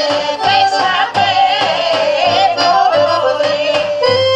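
Bulgarian women's folk group singing together, accompanied by an accordion and a large double-headed tapan drum beating steady strokes.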